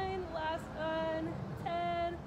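A high voice singing a few sustained notes with short breaks between them.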